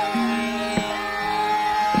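Hindustani classical music in Raag Bihag: a steady tanpura drone with two tabla strokes, about a second apart. A held melodic note dies away just after the start.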